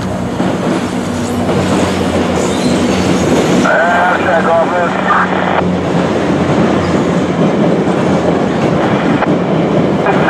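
Virginia Railway Express commuter train passing close by: the leading diesel locomotive's engine running steadily, then the bilevel coaches' wheels rolling on the rails.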